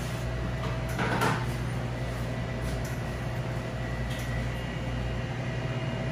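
Steady low machine hum, with a brief clatter about a second in.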